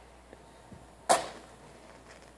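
A wooden match struck once on the side of a matchbox about a second in, bursting alight with a sharp scrape and flare that dies away within half a second. A couple of faint ticks come before it.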